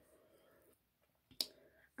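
Near silence, with one short sharp click about one and a half seconds in.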